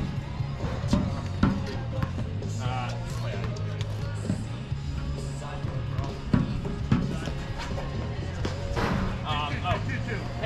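Paddles striking a ball during a doubles rally: sharp single hits, some half a second and others a couple of seconds apart, over steady background music.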